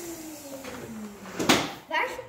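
A person's voice drawn out on one slowly falling pitch, then a single sharp knock about one and a half seconds in.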